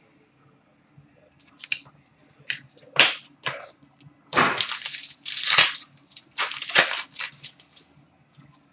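Trading cards being handled over a glass counter: a few faint clicks and one sharp snap about three seconds in, then a run of short rustling swishes as cards are moved through the hands.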